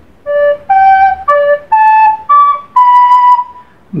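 A soprano recorder playing six separate notes, a short melody that keeps returning to D between steps up to G, A and B: re, sol, re, la, re, si. The last note is held longest.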